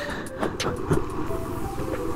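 A Yamaha NMAX scooter's single-cylinder engine running at low speed, a steady low hum under the noise of the ride on a wet road.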